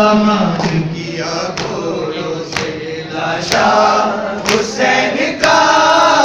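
A group of men chanting a Shia mourning lament (noha) together. Sharp strikes fall about once a second in time with the chant, typical of hands beating on chests (matam).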